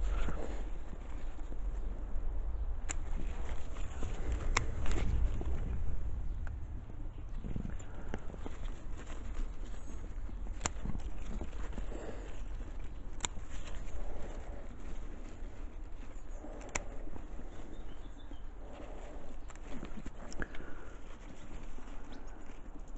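Bonsai scissors snipping shoots on a large-leaved lime, a sharp single click every few seconds, with leaves rustling as hands work through the canopy, over a low rumble.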